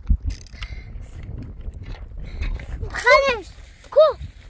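A puppy gives a quick run of high, squeaky whimpering yelps about three seconds in and one more short cry at the very end, over a low rumbling background.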